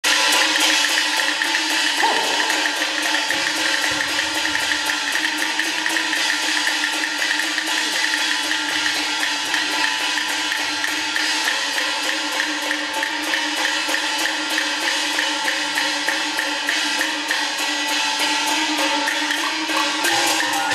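Taiwanese opera (gezaixi) percussion accompaniment: drums and cymbals struck in fast, continuous strokes, with a steady held tone sounding over them.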